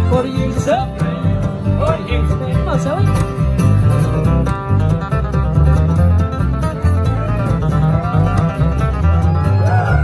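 Acoustic bluegrass band playing an instrumental passage with no singing: fiddle and acoustic guitar lead over upright bass and mandolin, with a steady beat.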